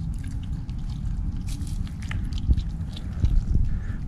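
Red fox cub chewing and biting on a piece of raw chicken heart, with small wet clicks and crunches of its jaws over a low steady rumble.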